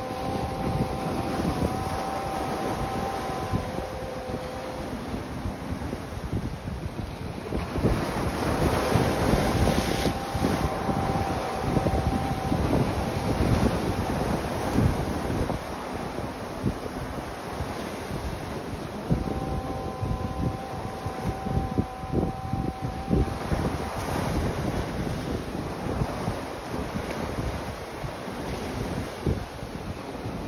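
Sea waves breaking and washing over a rocky shore, with wind buffeting the microphone. A faint steady tone of a few notes sounds three times, each time held for a few seconds.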